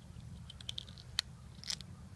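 A fresh garden pea pod being snapped and split open by hand: a few small crisp snaps, a sharp crack a little over a second in, then a brief crackle.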